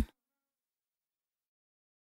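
A pop song's last sung note cuts off abruptly right at the start, followed by complete silence.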